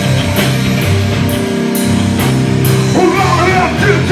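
Live rock band playing: electric guitars and bass over a drum kit, with cymbal or snare hits about twice a second. A singing voice comes in near the end.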